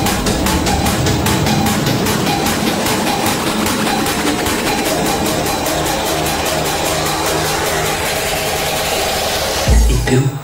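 Hard electronic dance music in the tekstyle/jumpstyle style, a continuous DJ mix with a fast, driving beat. A heavy deep bass hit comes in near the end.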